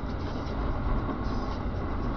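Steady road noise inside a moving car's cabin: engine hum and tyre rumble on a winter road.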